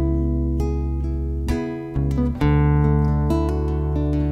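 Acoustic guitar and electric bass playing a slow country accompaniment between sung lines, the guitar chords ringing over deep bass notes. The sound fades a little, then a new chord is struck about two and a half seconds in.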